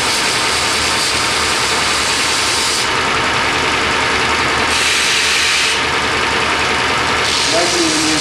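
Belt grinder motor running steadily with a damascus knife blade pressed against the belt in passes, a grinding hiss for the first three seconds and again from about five to seven seconds. The blade is being ground to take off drying marks on its face.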